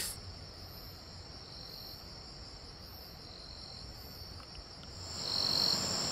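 Crickets singing in a steady, high, even chorus, with a fainter, higher call repeating about once a second. A soft hiss rises near the end.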